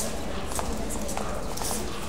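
Footsteps of several people walking away down a hard-floored corridor, a scatter of uneven taps and clicks.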